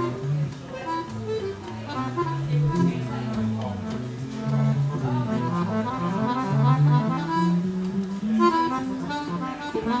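Live free jazz improvisation by accordion, tenor saxophone and electric guitar, the accordion to the fore, with notes shifting constantly and no steady beat.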